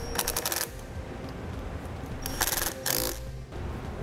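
A power ratchet or impact tool running nuts down in two short rattling bursts, the first about half a second long and the second a little longer near the middle, against a low shop background.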